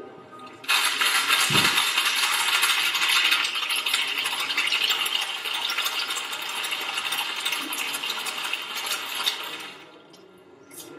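Ice rattling hard inside a metal cocktail shaker as it is shaken vigorously to chill the drink. It starts abruptly just under a second in, keeps going as a dense rattle for about nine seconds and eases off near the end.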